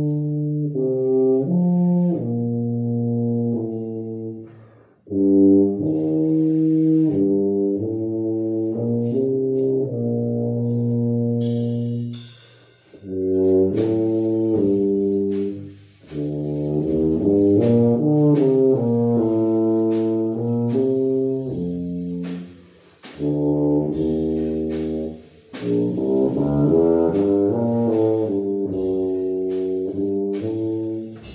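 Bass tuba playing a melody in phrases with short breaks between them. About twelve seconds in, a drum kit joins, its cymbals and drums keeping time under the tuba.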